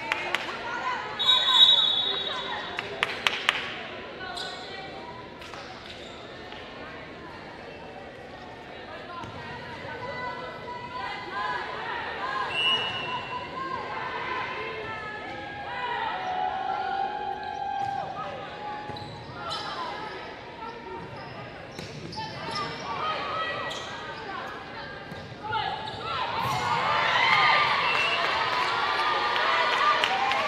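Indoor volleyball rally in a large gym: sharp smacks of the ball being hit and landing, with players calling out. About four seconds before the end, the team that won the point breaks into louder shouting and cheering.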